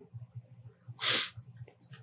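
A person's short, noisy breath through the nose or mouth about a second in, lasting about half a second.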